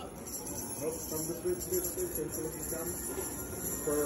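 Faint background Christmas music with jingling sleigh bells and a simple stepping melody, over the murmur of a busy shopping mall.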